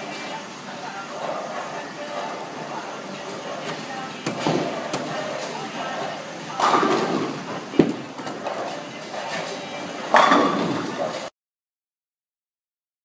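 Tenpin bowling alley noise with voices in the background. A sharp knock comes just under eight seconds in as the Storm Fireroad bowling ball is delivered onto the lane. A louder crash about ten seconds in is the ball striking the pins.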